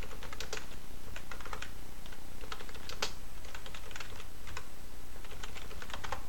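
Typing on a computer keyboard: irregular short runs of key clicks with pauses between them, over a steady low hum.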